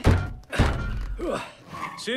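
Two heavy thuds from a film trailer's sound mix, the first right at the start and the second about half a second later, with a brief voice sound near the end.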